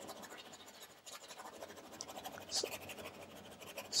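Faint, irregular scratching of a paintbrush dragging oil paint across canvas.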